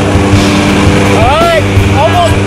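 Steady drone of a jump plane's engines and propellers, heard from inside the cabin in flight. A voice breaks in over it about halfway through.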